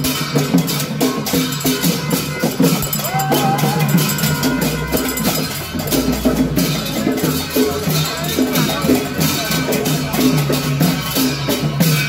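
Festival procession music: drums and percussion play a fast, steady rhythm without a break.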